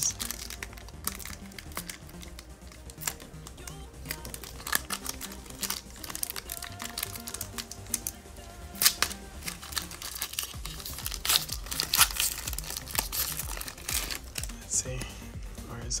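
Foil booster pack wrapper of a Pokémon trading card game pack crinkling and tearing as it is ripped open by hand, with many sharp crackles. Background music plays underneath.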